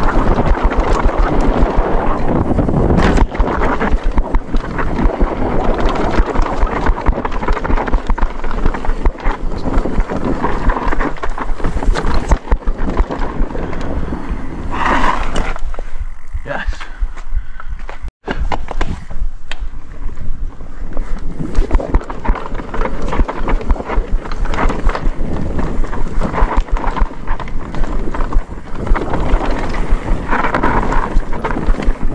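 Downhill mountain bike ridden fast over a dry dirt trail: tyres on dirt, a constant clatter and rattle from the bike over roots and bumps, and wind buffeting the microphone. The noise eases briefly about halfway through, on a smoother stretch.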